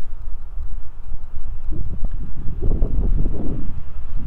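Footsteps on pavement over a low, gusting wind rumble on the microphone. The steps are clearest from about two seconds in.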